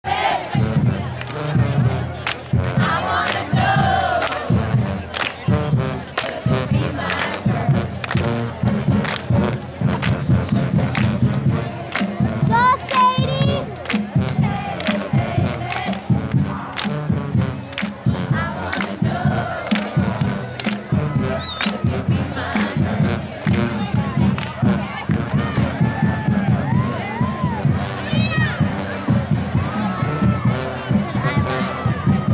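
Cheerleaders chanting and shouting a cheer with sharp hand claps about one and a half a second, over a continuous crowd din from the stands.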